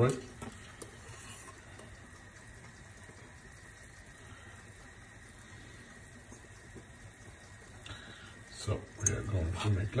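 Faint steady hiss from a hot frying pan, then near the end a fork clinking and scraping against the nonstick pan as mounds of mashed potato are pushed into shape.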